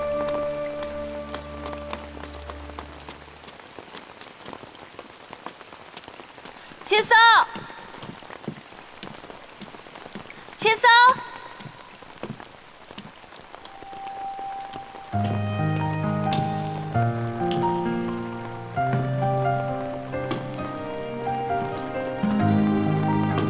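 Steady rain falling and pattering. A held music chord fades out in the first few seconds, two short, sharp high calls break in about 7 and 11 seconds in, and music with low, stepping notes begins about two-thirds of the way through.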